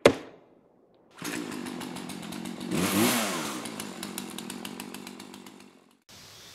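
An axe strikes into a wooden stump with one sharp blow. About a second later a chainsaw runs, revving up to its loudest in the middle and then fading out.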